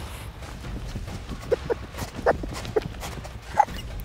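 A man's short, sharp gasps and huffs, about five in two seconds, from the burning heat of a Carolina Reaper sausage in his mouth. A low rumble of wind on the microphone lies underneath.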